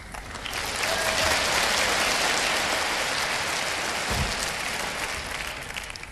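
Audience applauding. The applause builds up within the first second, holds, then slowly dies away toward the end.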